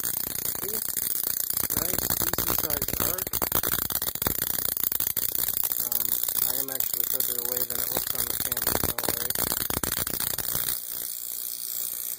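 Dense, sputtering crackle of high-voltage arcing from a neon sign transformer driving a Cockcroft-Walton voltage multiplier, with an arc burning at the end of a wire. It cuts off suddenly near the end.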